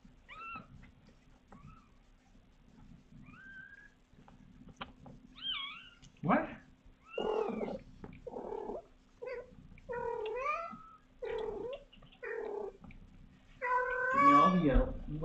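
Newborn kittens mewing: thin, high, short cries, faint at first, then louder and coming every second or so from about six seconds in.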